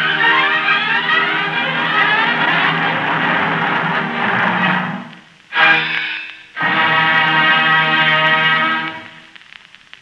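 Orchestra from a 1943 radio broadcast recording playing the close of a number. The music thins out about halfway in, then comes a short loud chord and a longer held final chord that dies away shortly before the end.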